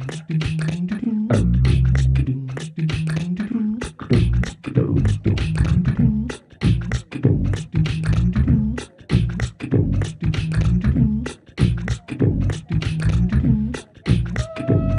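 A live-looped beatbox groove layered on a Boss RC-505mk2 loop station: a fast, dense run of clicking vocal percussion over a repeating low bass line that steps between a few notes, in a techno style. The beat drops out briefly a few times.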